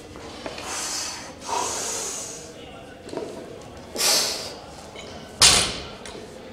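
A man breathing forcefully in short bursts through a set of barbell deadlifts. About five and a half seconds in, the loaded plates come down on the rubber gym floor with a sharp thud, the loudest sound here.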